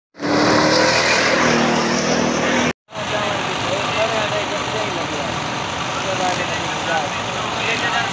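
An off-road rally car's engine running hard as the car slides through loose sand, for about two and a half seconds before it cuts off abruptly. Then a large outdoor crowd chattering and calling out.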